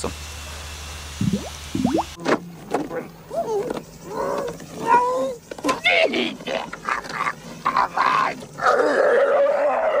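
After about two seconds of quiet outdoor background, a film soundtrack cuts in: straining grunts and cries, ending in a louder, sustained cry.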